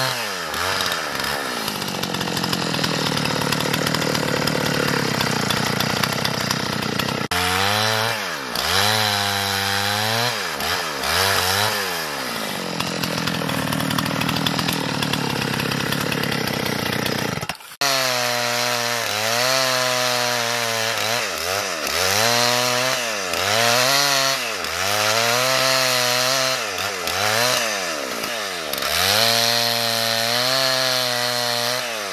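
Gasoline chainsaw ripping a pine log lengthwise, its engine bogging under load as the chain bites, then climbing in pitch again as the cut eases, over and over. Two long stretches hold steadier and lower under a continuous cut. The sound breaks off abruptly twice, once about a quarter of the way in and once a little past the middle.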